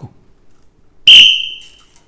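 Referee's whistle blown once: a single sharp, high blast about a second in that tails off over most of a second.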